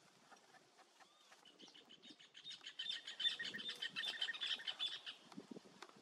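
A wild bird calling in a rapid chattering run of short, high notes for about two and a half seconds, starting near the middle, after a few faint softer notes.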